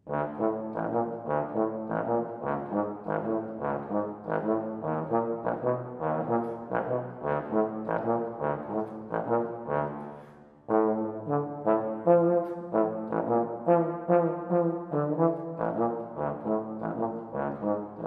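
Unaccompanied bass trombone playing a steady stream of short, detached notes. The playing dips briefly just after ten seconds, then carries on louder.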